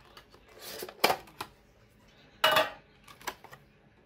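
Foil booster packs being handled: a few short crinkles and rustles, with a sharp click about a second in.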